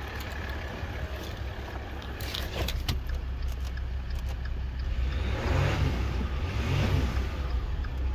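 Maserati Ghibli's 3.0-litre V6 turbodiesel idling steadily with a low hum and running evenly, without roughness, judged to be in good condition. A few sharp clicks come about two and a half to three seconds in.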